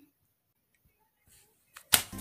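Near silence, broken near the end by a brief sharp click.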